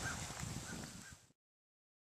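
Faint outdoor ambience with a few short, faint distant bird calls. It cuts off to dead silence just over a second in.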